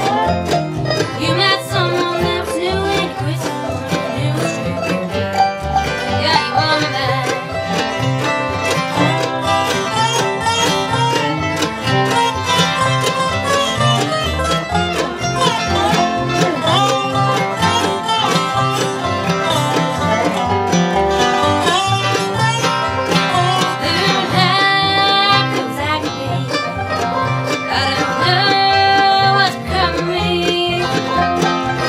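Live acoustic bluegrass band playing a song: mandolin, resonator guitar (dobro) and upright bass, with a woman singing lead.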